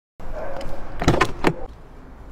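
A car door being opened from outside: a short whir, then sharp latch clicks and clunks about a second in and again half a second later as the door comes open.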